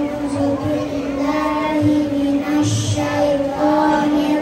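A young boy singing into a handheld microphone in long, held notes.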